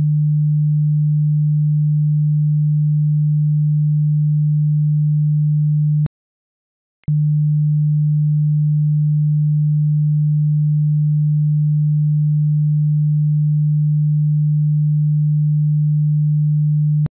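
Steady 150 Hz sine-wave test tone that cuts off with a click about six seconds in and comes back, with another click, after about a second of silence.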